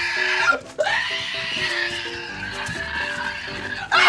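Background music with a long, harsh, high-pitched cry starting about a second in and held for about three seconds.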